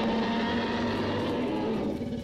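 A loud outro sound effect: a low rumble under several steady held tones.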